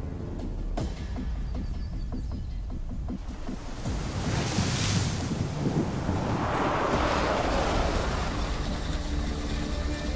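An SUV drives past on a muddy dirt road. The noise of its tyres and engine swells and fades about four to eight seconds in, over a dramatic music score.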